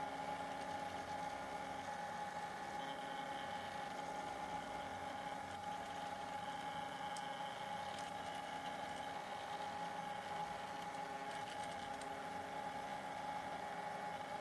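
Stepper motors of a small DIY egg plotter whining steadily as they turn a chicken egg and move a pencil across it, with a faint mechanical rattle. One steady tone holds throughout while fainter tones come and go.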